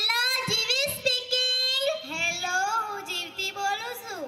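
A young girl singing into a microphone with no instruments, in long held notes that slide up and down in pitch.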